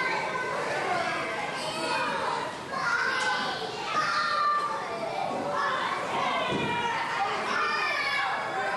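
Children playing: many high children's voices calling and chattering over one another without a break.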